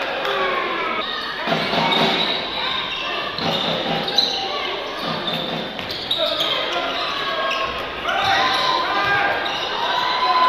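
A basketball being dribbled on a hardwood court, amid voices in a large, echoing sports hall.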